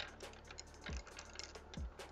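Light, irregular clicking and clacking of paintbrush handles being handled and picked through on a desk. Under it, faint background music with a soft low beat about once a second.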